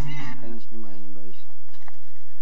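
A person's voice in pitched, rising and bending notes that cuts off abruptly about a second and a half in, followed by a few faint clicks.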